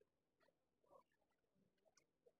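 Near silence, with only a few very faint, scattered ticks.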